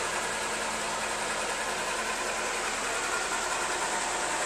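Steady background hiss with a faint low hum beneath it, unchanging throughout and with no distinct events.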